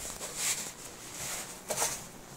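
A split foam pool noodle being pressed by hand onto a plastic tub rim: foam rubbing against plastic in two brief scuffs, about half a second in and again near the end.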